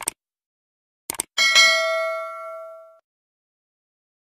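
Subscribe-button animation sound effects: two quick pairs of mouse clicks, then a bright notification-bell ding that rings out for about a second and a half and cuts off suddenly.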